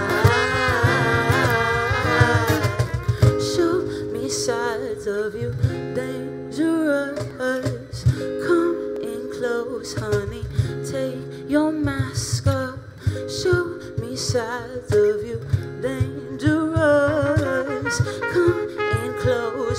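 A live pop band playing a passage without lyrics: trumpet melody over strummed acoustic guitar and a steady beat.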